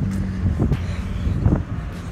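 Outdoor low rumble of wind buffeting a phone's microphone, over a steady low hum of nearby traffic, with a few irregular low thumps in the middle.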